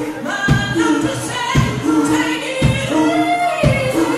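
Live band playing, with a woman singing lead over electric guitars, bass and drums. Held sung notes ride over a steady kick-drum beat of about one a second.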